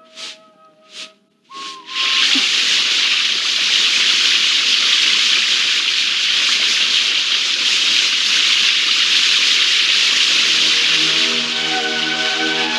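Garden hose spraying a strong jet of water: a loud, steady hiss that starts suddenly about two seconds in. It is preceded by a few short sharp sounds, and music comes in near the end.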